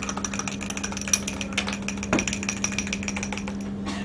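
A metal spoon clinking rapidly against a drinking glass while stirring a drink, with a ringing glass tone; the clinking stops just before the end. A steady low hum runs underneath.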